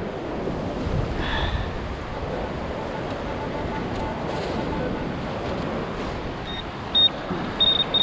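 Steady surf and wind noise at the water's edge. Near the end a handheld metal-detecting pinpointer beeps in short high tones that lengthen into a held tone, the sign that it is on a buried metal target in the dug sand.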